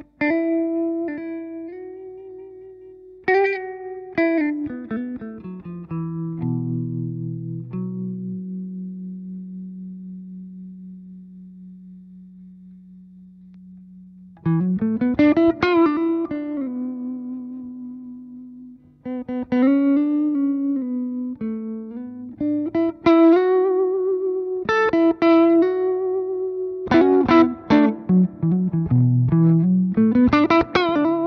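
Gibson Les Paul '50s Goldtop electric guitar with P90 pickups playing melodic lead phrases with string bends and vibrato. In the first half, one low note is left ringing and fades slowly for about six seconds before the playing picks up again.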